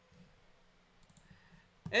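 A few faint computer mouse clicks, about a second in, over quiet room tone; a man's voice starts speaking near the end.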